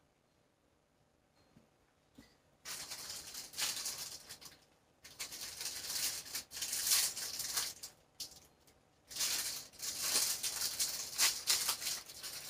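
Plastic food packaging crinkling and rustling as it is handled and opened, in three stretches of a few seconds each with short breaks between.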